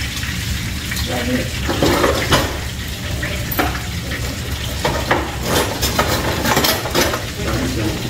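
Fish frying in oil in a frying pan on the stove, a steady sizzle, with several sharp clinks of a utensil against the pan.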